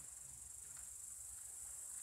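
Insects in a summer meadow chirring continuously: a faint, steady, high-pitched hiss.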